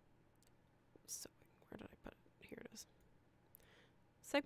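Near silence, with a few brief faint whispered sounds between about one and three seconds in.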